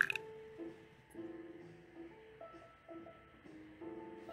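Quiet instrumental background music: soft held notes changing pitch every second or so.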